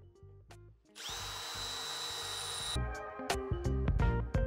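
Drill boring into stainless steel with a Gehring twist drill bit: a steady high whine over a hiss of cutting metal. It starts about a second in and stops abruptly just before three seconds, when guitar music takes over.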